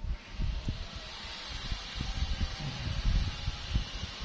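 Wind buffeting the microphone in irregular gusts, over a steady hiss.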